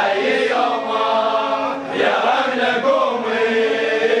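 A crowd of men chanting a Shia mourning chant together, in long held notes.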